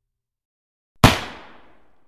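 A single loud gunshot about a second in, its echo dying away over about a second.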